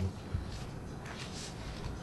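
Quiet room tone of a meeting room: a low steady hum with a few faint small handling noises and one soft thump about a third of a second in.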